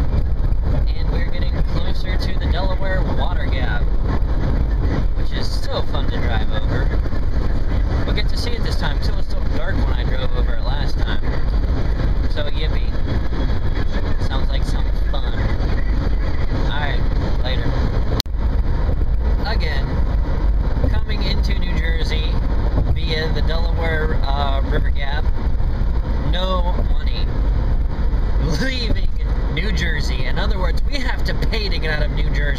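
Steady road and engine noise inside a moving car's cabin at highway speed, a continuous deep rumble. An indistinct voice comes and goes over it, mostly in the second half.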